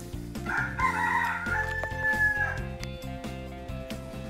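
A rooster crowing once, a single call of about two seconds that ends on a long held note, over background music.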